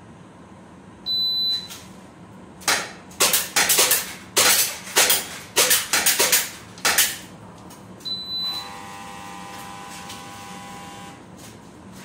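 A shot-timer beep starts the string, then about a dozen rapid shots from airsoft pistols striking the plate targets over about four seconds. A second short beep ends it, and a steady hum follows until about 11 seconds in.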